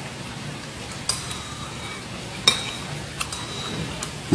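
Cutlery clinking against a plate during a meal: three short clinks with a brief ring, about a second in, midway and near the end, over steady background noise.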